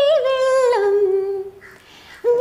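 A woman singing a wordless melody line in a humming, vocalised style: a held note with quick ornaments, sliding down to a lower held note. It breaks off about one and a half seconds in for a short breath pause.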